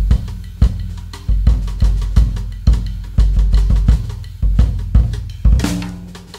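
Solo jazz drum kit playing loose, uneven patterns of kick drum, snare and tom strokes, several a second, with low drum ringing between hits and a bigger crash with a long wash near the end.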